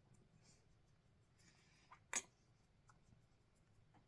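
Near silence: faint soft rubbing of a makeup sponge dabbed against the skin, with one sharp click about two seconds in.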